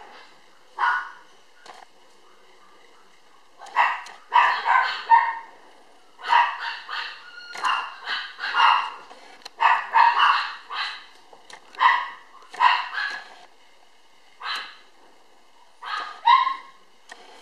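Black toy poodle puppy barking and yipping in play as a hand tussles with it: one short bark about a second in, then quick runs of small barks from about four seconds on.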